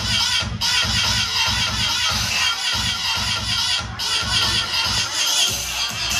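Electronic keyboard music played through loudspeakers: a steady pulsing bass beat under a wavering high melody, with the beat dropping out briefly twice.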